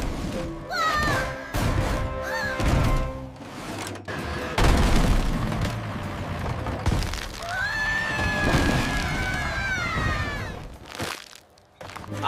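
Cartoon sound effect of a brick wall being smashed: a loud crash about four and a half seconds in, then bricks cracking and crumbling, over background music.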